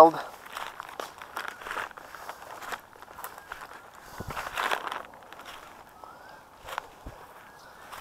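Footsteps tramping through tall grass and weeds, with dry stems and leaves crunching and rustling irregularly underfoot close to the body-worn microphone.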